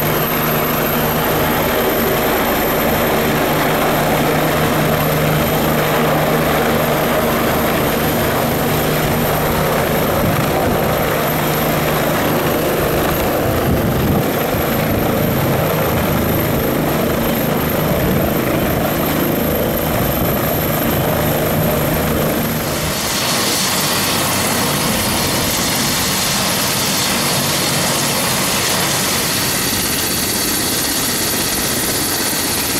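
Bell 429 twin-turbine helicopter hovering low, its rotor and turbine noise loud and steady. About 23 seconds in the sound turns brighter and hissier as the helicopter sits on the ground with its rotors still turning.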